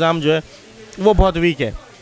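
Speech only: a man's voice holds a drawn-out syllable, then says a few short words after a brief pause.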